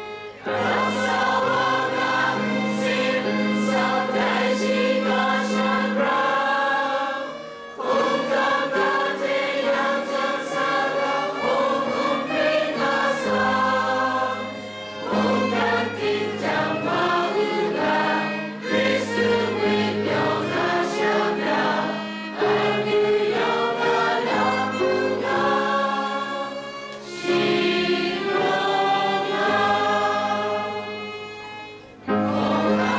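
A group of voices singing a hymn together in long held phrases with short breaks between lines, over sustained low accompanying notes from instruments that include a violin.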